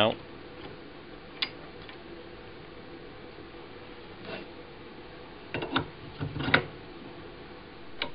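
Metal lathe parts being handled on the bench: a sharp click about a second and a half in, a soft knock near the middle, and a short run of knocks and clunks around six seconds in.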